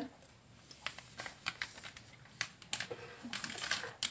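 Scattered light clicks and taps of things being handled and set down on a kitchen counter, coming irregularly from about a second in.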